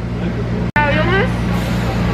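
Airport apron bus engine running with a steady low hum, a voice speaking briefly about a second in.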